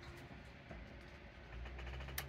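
Faint steady low hum from the Sony MXD-D3 CD/MiniDisc deck as it powers down after the standby button is pressed, with a low rumble swelling near the end.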